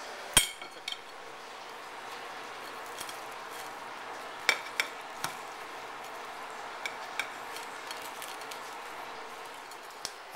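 A table knife cutting into a crisp deep-fried Cornish hen on a plate, with a few sharp clicks of the blade against the plate over a steady faint hiss. A single thump comes just after the start.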